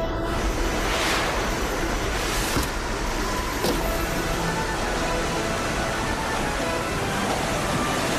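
Steady rushing noise of a cartoon ocean wave under background music, with a few brief swooshes in the first four seconds.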